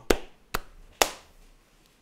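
A person clapping hands three times, sharp single claps about half a second apart.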